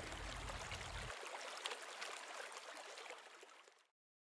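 A small waterfall trickling and splashing, a steady hiss that fades away near the end.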